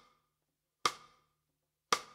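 Cross-stick (rim click) on a snare drum: the stick laid across the head and lifted so it clicks off the rim. Two sharp clicks about a second apart, each ringing briefly.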